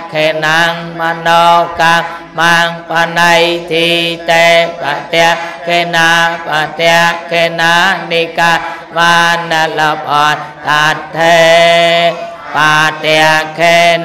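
A Buddhist monk chanting Pali into a microphone, one male voice reciting in a steady near-monotone with short breaks between phrases. Near the end he holds one syllable longer.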